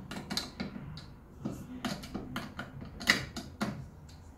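Screwdriver working the adjustment screws of an INCRA Miter 1000SE miter gauge fence, loosening them so the fence can be squared to the saw blade: a run of small, irregular clicks and knocks, the sharpest about three seconds in.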